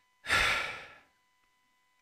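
A single audible breath from the speaker, a sudden rush of air that fades away within about a second, taken between two repeated phrases.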